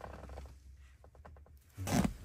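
Pokémon trading cards being handled and slid against each other, a faint scraping, with a short loud burst of noise near the end.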